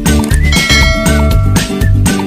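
Upbeat intro music with a steady bouncing bass beat. About half a second in, a high held tone is laid over it for about a second.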